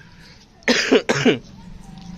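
A short cough-like vocal burst about two-thirds of a second in, a rough noisy start followed by a brief falling voiced sound, over a low steady hum.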